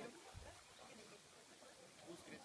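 Near silence: faint outdoor room tone, with one brief low thud about half a second in.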